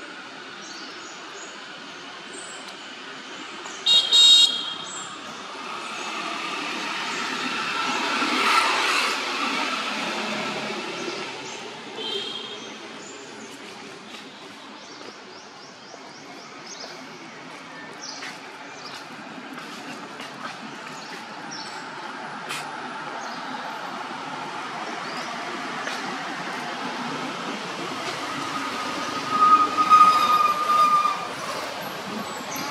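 Outdoor road traffic: a short horn-like toot about four seconds in, then a vehicle passing, swelling to a peak and fading, with a second shorter toot soon after. Another loud burst comes near the end.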